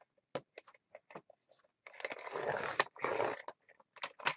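Sheet-music paper being handled and slid on a paper trimmer: a few light taps and clicks, then about a second and a half of paper rustling and scraping with a brief break in the middle.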